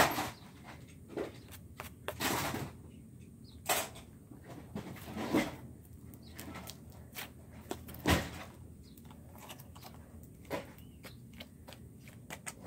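Slime being squeezed and pulled apart in the hands: irregular squelches and pops, a second or two apart.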